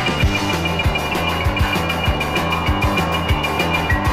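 Live rock and roll band with piano, guitar and drums playing an instrumental stretch between vocal lines, with no singing. A steady drum beat lands about twice a second under held, repeating high notes.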